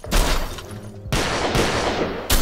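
Edited-in gunfire or blast sound effects for a toy robot's attack: a loud noisy burst right at the start and another about a second in, each trailing off, with a smaller one between them.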